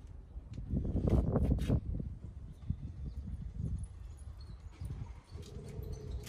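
A few light knocks and clicks about a second in as a small camper trailer's doors and latches are handled, over a low rumble of wind on the microphone.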